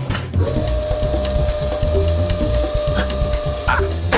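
Cartoon soundtrack: a long steady tone starts about half a second in and holds for roughly three seconds over a continuous low bass.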